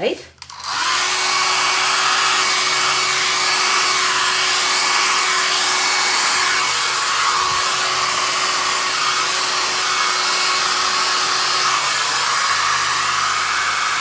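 Handheld hair dryer switched on about a second in and running steadily, blowing a stream of air across wet acrylic paint on a canvas. A faint steady hum sits under the rush of air and drops out shortly before the end.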